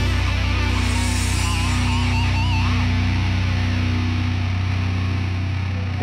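Heavy rock theme music with distorted electric guitar, holding one long sustained chord that rings on until the music cuts away at the end.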